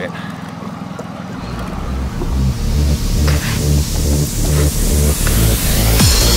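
Small outboard motor running steadily with a low hum. From about a second and a half in, electronic dance music with a heavy bass beat and a rising hiss fades in and grows louder until it covers the motor.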